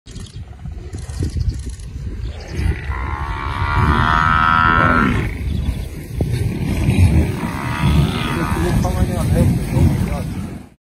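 Lions growling as a pride attacks a Cape buffalo, over a dense low rumble. A long, high, drawn-out call rises out of it about three seconds in, and a shorter one comes near eight seconds.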